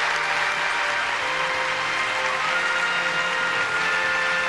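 An audience applauding at the end of a speech, over background music with long held notes.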